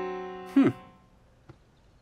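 Upright piano chord ringing on and fading away over about a second. A short, falling hummed "hm" sounds over it about half a second in; after that it is nearly quiet apart from one faint click.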